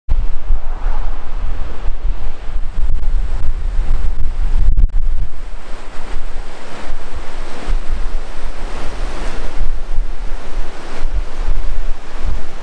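Wind buffeting the microphone in gusts, over the steady rush of a fast-flowing river with rapids.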